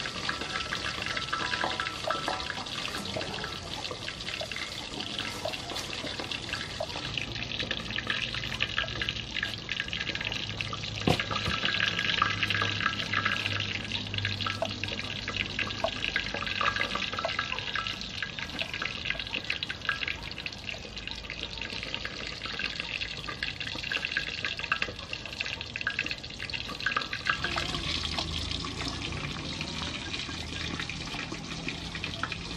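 Knife slicing fresh ginger root into thin slices on a round wooden chopping board: many quick cutting clicks over a steady crisp noise.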